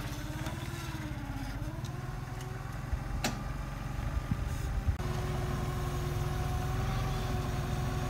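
Clark forklift's engine running as it drives and positions its load. Its pitch dips and rises in the first two seconds, a sharp click comes a little over three seconds in with a few knocks after it, and the engine then runs at a steady pitch.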